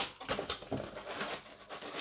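Plastic zip bags full of LEGO bricks rustling and crinkling as they are handled, with the plastic bricks inside clicking against each other in quick, irregular ticks.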